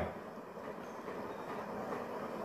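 Faint, steady background noise with no distinct events: room tone.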